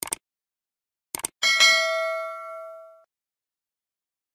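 Subscribe-button animation sound effect: a quick double mouse click, another double click about a second later, then a bell ding that rings out for about a second and a half.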